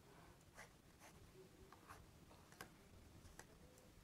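Near silence with faint, irregular clicks, a few a second.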